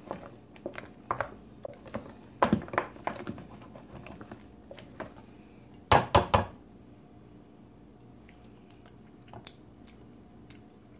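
A utensil stirring thick mashed potatoes in a stainless steel pot, with soft squishing and scattered light scrapes and clicks against the pot. About six seconds in comes a quick run of about four sharp knocks of the utensil against the metal pot.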